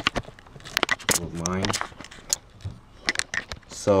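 A few light clicks and knocks from handling, scattered between two short spoken words.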